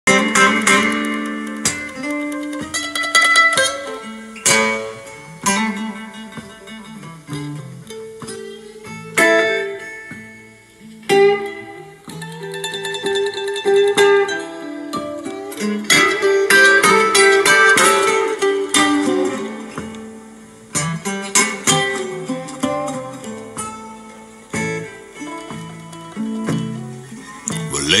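Blues guitar intro played back through a bare 8-inch field-coil full-range paper-cone driver, picked up by a microphone in the room: a run of plucked notes and chords with sharp attacks, singing coming in at the very end.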